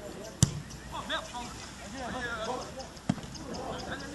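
Two sharp thuds of a football being kicked on grass, the first and loudest just under half a second in, the second about three seconds in, with players shouting across the pitch between them.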